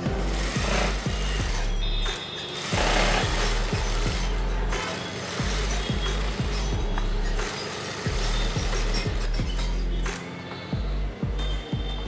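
Singer industrial sewing machine stitching in runs of about two seconds, its motor and needle running in a steady rapid beat and stopping briefly between runs, five times.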